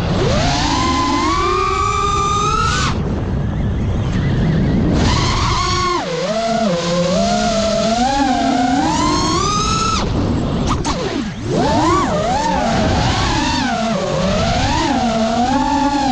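FPV quadcopter's electric motors whining, the pitch sliding up and down constantly with the throttle, over a low rush of wind on the onboard camera's microphone. The whine drops out briefly twice, about three seconds in and again near ten seconds, as the throttle is cut.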